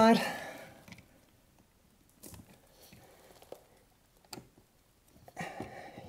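Faint scraping and a few small clicks of a hand screwdriver working a mounting screw into a French plug socket's wall box, with sharper clicks about three and a half and four and a half seconds in.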